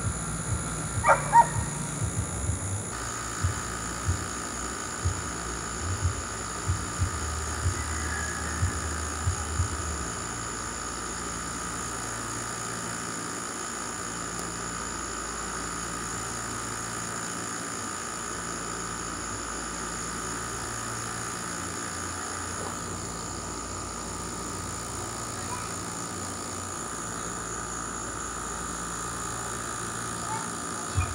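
A steady background drone with thin high tones, and irregular low bumps and rustles in the first ten seconds.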